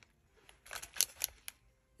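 Thin metal craft cutting dies in clear plastic sleeves being handled and picked up. There is a short run of crinkles and light clicks, loudest near the middle.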